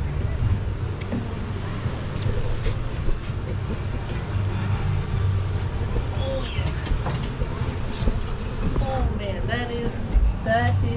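Wind buffeting an outdoor camera microphone: a steady, uneven low rumble, with faint voices near the end.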